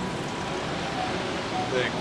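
Steady city street background noise with traffic, and a brief spoken word near the end.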